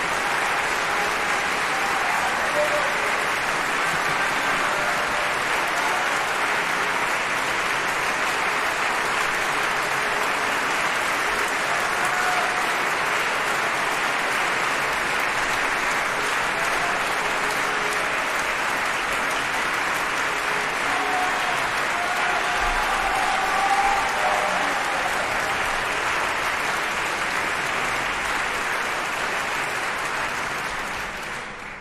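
A theatre audience applauding, steady and sustained, with a few faint voices in the crowd.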